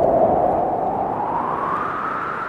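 A whooshing noise sweep in a song track, hissy with no clear notes, its pitch slowly rising while it fades a little.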